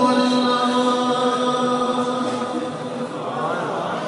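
Male naat reciter singing unaccompanied into a microphone, holding one long note that slowly fades away.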